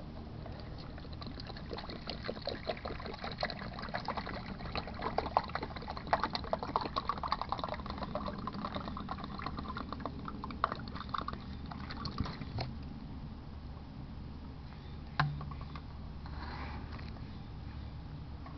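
Water poured from an upturned plastic bottle into a plastic measuring jug, a dense run of small splashes and pops for about twelve seconds that then thins to a quiet trickle, with one brief knock near the end.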